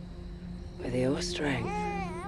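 A woman's high, strained wailing cry, its pitch bending up and down, starting about a second in. Beneath it runs a low steady music drone.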